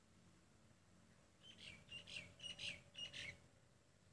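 A bird chirping: a quick run of about five short high calls lasting about two seconds.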